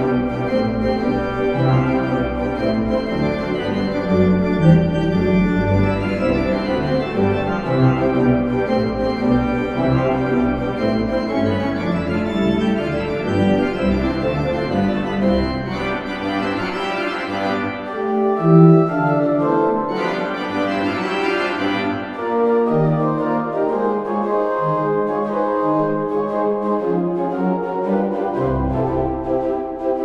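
Church organ playing a light, cheerful Christmas piece: sustained chords on the manuals over a moving pedal bass, which drops out for a few seconds past the middle and then comes back.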